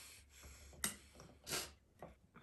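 Faint handling noise as a rubber balloon is worked over the neck of a glass flask: a sharp click a little under a second in and a short hiss near the end.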